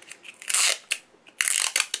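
Clear adhesive tape pulled off the roll and torn: two short rasping bursts, about half a second in and again around a second and a half in, the second one longer.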